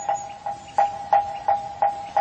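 A moktak (Buddhist wooden fish) struck in a steady rhythm, about three strikes a second, each a short hollow knock on one clear pitch. It keeps time between verses of a chanted sutta recitation.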